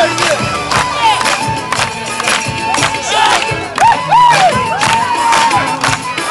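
Live band music for a Nepali dance with a steady drumbeat, over a dancing crowd that whoops and shouts repeatedly.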